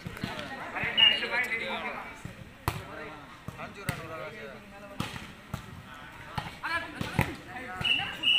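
A volleyball being struck again and again during a rally: a series of sharp slaps of hands on the ball, roughly a second apart, with players and spectators shouting.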